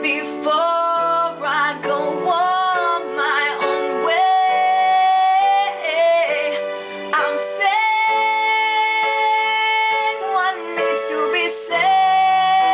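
A woman singing a slow ballad in long held notes, the melody bending between pitches, over sustained chords on an electronic keyboard.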